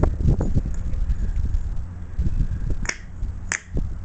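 A broken aluminium piston being handled on a concrete floor: a steady low rumble and small knocks, with two sharp clicks about three and three and a half seconds in.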